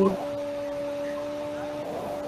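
A steady low hum holding two pitches an octave apart, over faint background hiss.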